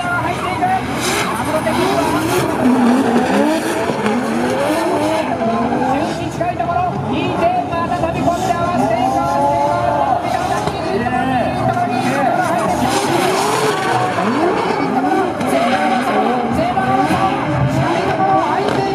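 Two drift cars, a Nissan GT-R and a Mazda RX-7, running in tandem at high revs, their engine notes rising and falling as they slide. Their tyres squeal and skid throughout.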